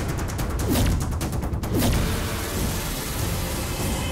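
Dramatic TV-serial background score: a rapid run of percussive hits over a heavy low rumble for the first second and a half, with falling swoosh effects twice.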